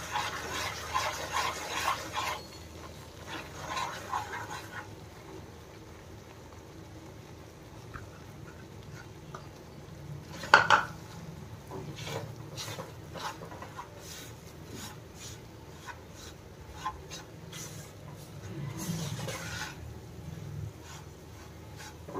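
A spatula stirring and scraping gram flour and ghee around a non-stick pan, with repeated short scraping strokes and one sharper knock about ten and a half seconds in.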